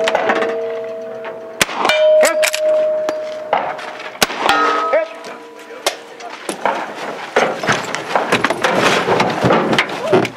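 Reproduction Winchester 1866 lever-action carbine fired twice, about two and a half seconds apart, each shot followed by the ringing of a struck steel target; the ring of an earlier hit is fading at the start. From about six seconds in there is a run of knocks and rustling as the shooter moves into the truck's cab.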